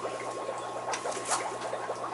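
Faint rustling and a few light clicks of hands working twine at a black plastic plant pot, over a steady low hum.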